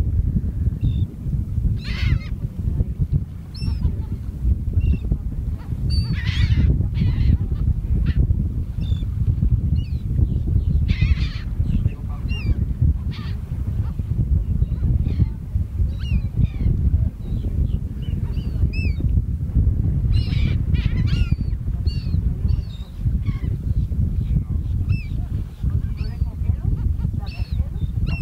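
Birds calling again and again, short high calls scattered through the whole stretch, over a heavy rumble of wind on the microphone.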